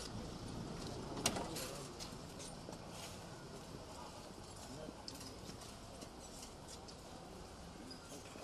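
Faint street background with scattered light clicks and knocks, and one sharp click about a second in, as the birdcage is handled beside the van's open door.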